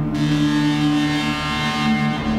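Eurorack modular synthesizer playing a sustained low drone. A brighter, buzzing layer with many pitched overtones comes in just after the start and cuts off at the end.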